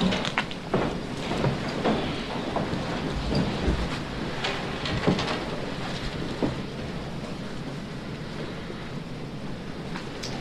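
Steady room hiss with scattered soft knocks and rustles from people stirring in a chapel, busier in the first six or seven seconds and calmer after.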